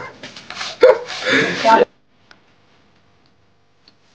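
Voices and laughter that stop abruptly just under two seconds in, followed by faint quiet with a few light clicks.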